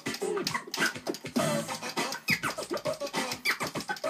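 Vinyl record being scratched back and forth by hand on a Technics turntable, chopped by quick crossfader cuts on a Pioneer DJM-400 mixer: a fast run of short squeals sweeping up and down in pitch.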